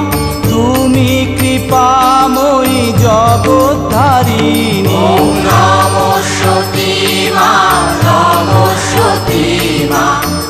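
Devotional song to Sati Maa playing as background music: a wavering melody line over a steady bass beat, here in a stretch without clear sung words.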